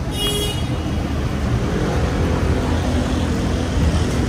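Street traffic: a steady low rumble of vehicles, with a brief high-pitched toot just after the start and an engine hum coming in around halfway.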